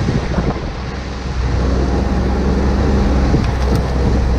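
Ski-Doo Skandic 900 ACE snowmobile's four-stroke three-cylinder engine running steadily under way, with wind buffeting the microphone.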